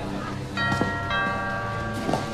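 Two bell-like chime notes, struck about half a second apart, each ringing on, over quiet background music.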